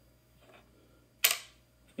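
A single sharp metallic click about a second in from an all-metal Kingston DataTraveler Locker+ G3 USB flash drive being handled, typical of its metal cap snapping on.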